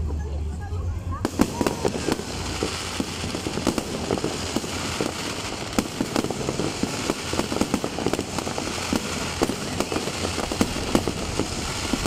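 Fireworks display: a dense barrage of bangs and crackles from aerial shells and rockets, picking up about a second in and continuing rapidly.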